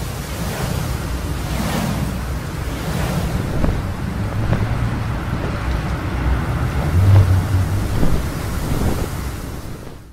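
Loud rushing wind sound effect with sweeping whooshes near the start and a low rumble underneath, swelling briefly about seven and eight seconds in, then cutting off at the end.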